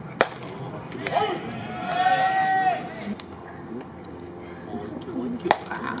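A pitched baseball popping into the catcher's leather mitt, one sharp crack just after the start. A long shouted call follows a couple of seconds later, and another sharp crack comes near the end.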